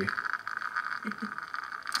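Espresso streaming from the bottomless portafilter of a manual lever espresso machine into a cup, heard as a steady faint trickle.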